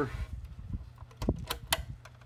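Small clicks and handling noise from a test lead and its alligator clip being handled on the fence charger's plastic case, with three sharp clicks in quick succession a little over a second in.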